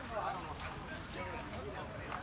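Faint background chatter of people talking at an outdoor market, with no one speaking close by.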